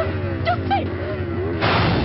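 Film soundtrack of score and sound effects: wavering tones that rise and fall, with a loud burst of noise for about half a second near the end.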